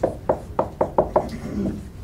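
A quick run of sharp taps or knocks, about eight in two seconds, unevenly spaced.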